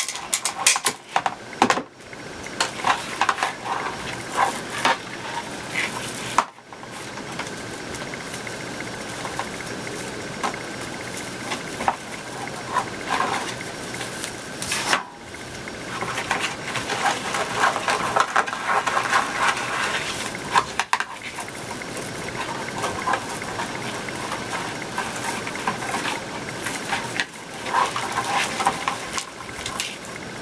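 Plastic deco mesh rustling and crinkling as it is handled and worked onto a wire wreath frame, with scattered small clicks and taps throughout.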